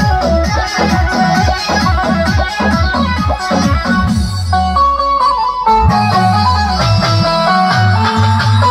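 Loud dance music played through a DJ truck's loudspeaker stack, with fast bass drum hits falling in pitch, about three to four a second. A little past halfway the bass drops out briefly for a high melody line, then a steady bass line comes back.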